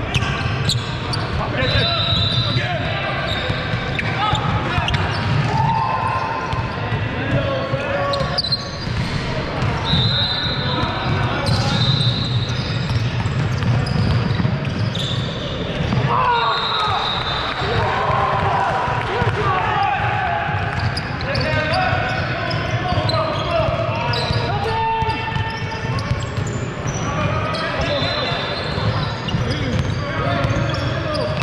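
Basketball being dribbled on a hardwood court, with short high squeaks of sneakers and players' shouts, all echoing in a large hall.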